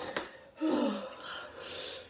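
A person gasping and breathing hard through the mouth against the burn of a very hot gummy bear, with a short falling moan about half a second in and a breathy hiss of air near the end.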